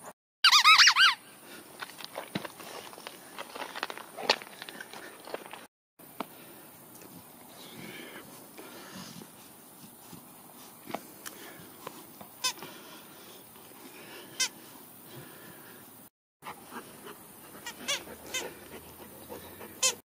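Squeaker inside a plush dog toy squeezed by a Labrador's jaws. One loud, wavering squeak comes about half a second in, then short squeaks now and then as the dog chews the toy.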